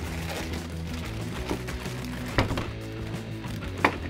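Thin plastic bags crinkling as toy parts are pulled out of them, with sharp clicks about halfway through and near the end, over steady background music.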